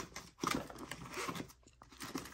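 Hands rummaging in a fabric tool tote: rustling of the bag and tools knocking lightly together, in short irregular bursts with a few clicks.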